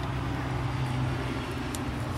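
A machine running steadily in the background, a low even hum with no change in pitch.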